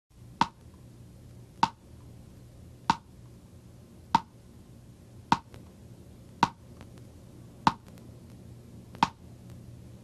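A sharp pop with a short ringing note, repeated eight times at a steady pace of about one every 1.2 seconds, over a steady low hum.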